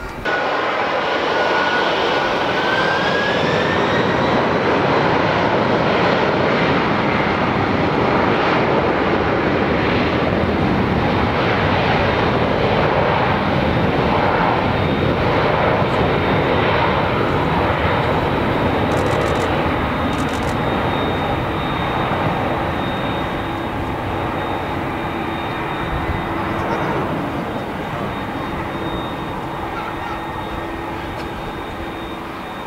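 Boeing 747-400's four General Electric CF6 turbofans spooling up to takeoff thrust: the roar comes in abruptly, with a whine rising in pitch over the first few seconds, then a loud steady roar during the takeoff roll that slowly fades as the jet moves away down the runway.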